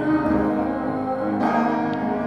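Music: a woman singing a slow worship song with piano accompaniment, the notes and chords held and ringing.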